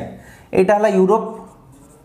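A felt-tip marker writing on a whiteboard: faint scratchy strokes as a word is lettered. A man's short spoken phrase in the middle is the loudest thing.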